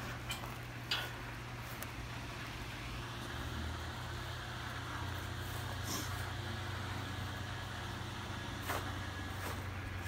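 A steady low hum of a motor or engine running, with a few faint ticks.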